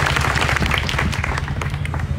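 Audience applauding at the close of a speech: dense, steady clapping, with a steady low hum underneath.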